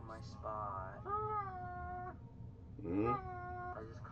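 A person's long, drawn-out cries of distress, two of them, the second rising in pitch from low.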